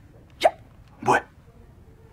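A woman crying: two short, catching sobs, the second a little longer and voiced, about two-thirds of a second apart.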